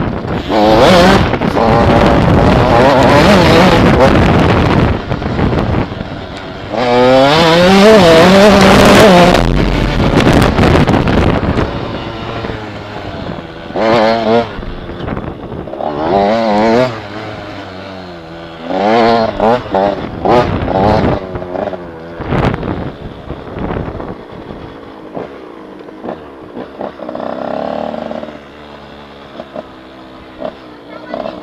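Mini enduro motorcycle engine heard from the rider's seat, revving hard with pitch climbing and dropping for about the first ten seconds. It then eases off into short throttle blips and falls to a quieter running engine near the end as the bike slows.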